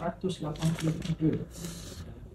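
A man speaking in a steady, low voice, mid-sentence, with a short rustle near the end.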